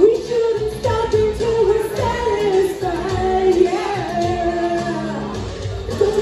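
A young woman singing a karaoke song through a handheld microphone and PA speakers, over a backing track, the melody moving in long held notes.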